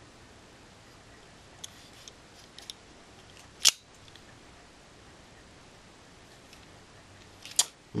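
Kershaw Speedbump assisted-opening folding knife handled with a few faint clicks, then one sharp snap about three and a half seconds in as the blade springs open and locks, and another click near the end.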